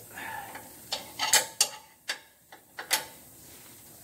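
Wrench on the nut of a control-arm eccentric (cam) bolt, loosening it for a caster and camber adjustment: several sharp, irregular metallic clicks and clacks.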